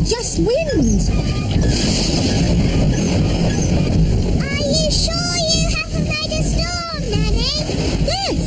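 Cartoon storm sound effect: strong wind with a deep, steady rumble. About halfway through, wavering pitched sounds rise and fall over it.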